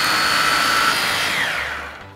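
Small electric countertop blenders running together with a high motor whine, blending smoothies. The whine drops in pitch and dies away about one and a half seconds in as they are switched off.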